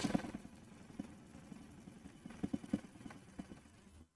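Umbrella sewing machine running faintly as it stitches cloth on a test run, now picking up the thread after a repair for skipped stitches. The mechanism gives a few light ticks about two and a half seconds in.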